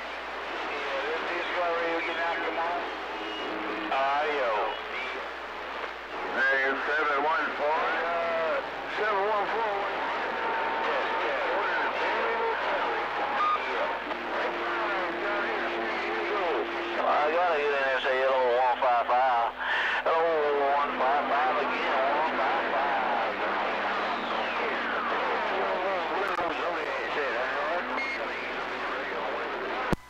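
CB radio receiver's speaker carrying steady hiss and static with faint, garbled voices of distant stations talking over one another. A few steady whistles sound through it, and near the end a whistle glides downward.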